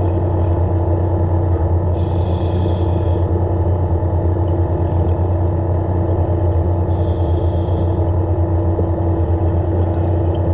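Dive Xtras BlackTip underwater scooter motor running steadily underwater, a constant hum. A diver's regulator exhaust bubbles rush out twice, about two seconds in and again about seven seconds in.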